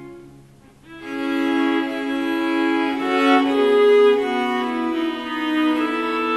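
A consort of four viol da gambas playing. A phrase dies away in the hall's reverberation, then the players come back in about a second later with sustained bowed chords.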